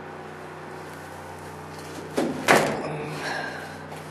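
Steady hum of a generator running in the background. About two seconds in come two sharp knocks, the second louder and dying away over about a second.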